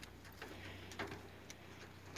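Quiet outdoor background with a few faint, sharp clicks, irregularly spaced about half a second apart.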